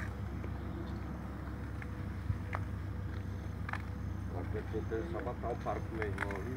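Steady low outdoor rumble with a few light clicks, and faint voices talking in the background in the last couple of seconds.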